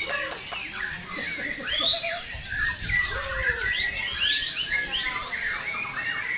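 Several caged white-rumped shamas (murai batu) singing at once: a dense stream of quick whistled and chattering phrases that glide up and down in pitch. A thin, high, steady note comes and goes over them.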